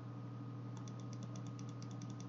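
A computer key tapped quickly and repeatedly, starting a little under a second in: a run of light, evenly spaced clicks, about eight a second, as an animation is stepped forward one frame at a time. A steady low hum runs underneath.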